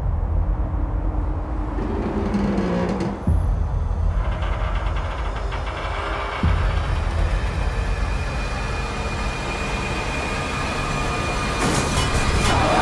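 Film soundtrack of sound design: a deep, heavy rumble that surges suddenly about three seconds in and again about six and a half seconds in. A brief held tone sounds around two seconds, and a hiss builds over the second half.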